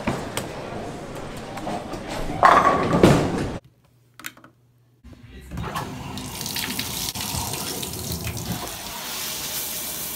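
Bowling-alley din with a bowling ball rolling down the lane and crashing into the pins about two and a half seconds in, the loudest sound here. After a brief near silence, a shower valve lever is turned and the shower head sprays water with a steady hiss.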